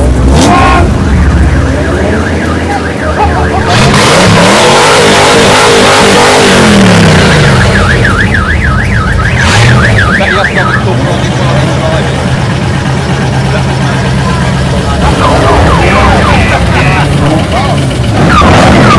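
A car engine running close by, revving up and down a few times about four to seven seconds in, then settling to a steady idle. A warbling high tone sounds for a few seconds around the middle.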